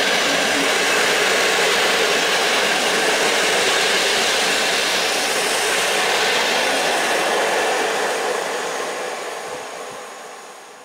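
Passenger coaches of an express train running past at speed: a loud, steady rush of wheel and air noise that fades away over the last couple of seconds as the train recedes.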